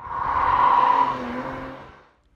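A short logo sound effect: a swell of noise that builds over about half a second, peaks near the middle and fades away by the end.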